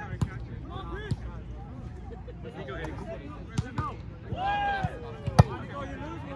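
A volleyball being struck by players' hands and arms during a rally: several sharp slaps, the loudest about five seconds in.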